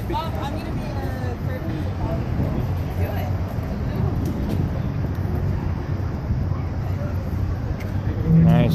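Steady low rumble of street traffic, with people's voices talking nearby.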